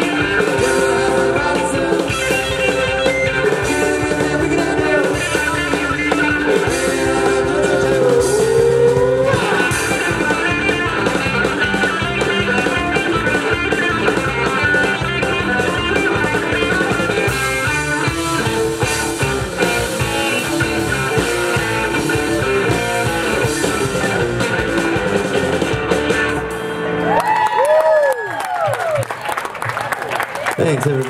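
Live rock band playing an instrumental passage: electric guitar lead over bass and drums, with sweeping bent notes near the end.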